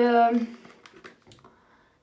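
A held word trails off, then comes a short pause with a few faint clicks and taps of long artificial nails handling a small cardboard box.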